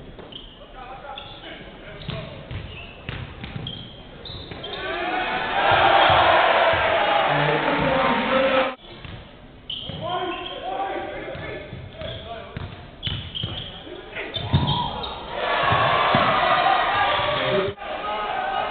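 Basketball game sound in a gym hall: a ball dribbling and bouncing on the hardwood court, with a crowd cheering and shouting loudly twice, about five seconds in and again near the end, each burst cut off abruptly.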